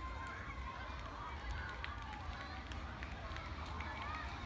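Distant children's voices, a jumble of faint calls and chatter from a group running, over a steady low rumble.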